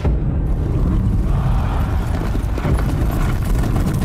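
Hoofbeats of a field of racehorses galloping on a dirt track, loud and dense with a deep rumble beneath, the strikes growing sharper and more crowded in the second half.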